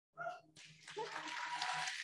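Audience clapping and cheering, starting about half a second in and building slightly.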